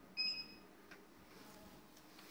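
A short, high electronic beep of about half a second, followed by a faint click, over quiet room tone.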